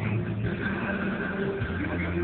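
Live amplified music through a PA system: a man singing into a handheld microphone over a backing track, with held notes and a steady bass.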